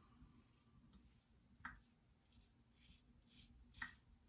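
Faint scraping of a Parker 26C open-comb double-edge safety razor cutting through about ten days of stubble, a few short, quiet strokes.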